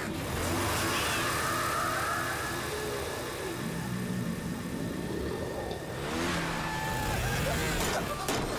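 Cartoon motor scooter engine sound effect, running hard at high revs.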